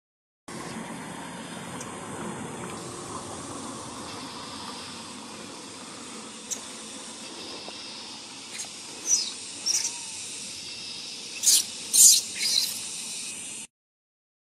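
A newborn rhesus macaque giving a few short, high squeals that fall in pitch, starting about nine seconds in, with the two loudest near the end, over a steady outdoor hiss.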